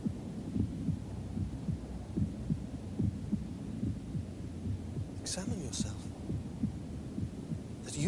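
A low pulsing rumble with many irregular beats, and a brief hiss a little after five seconds in.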